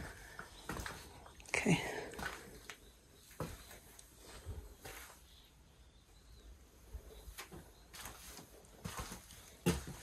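Footsteps and scuffs on a debris-strewn floor, with scattered light knocks and clicks.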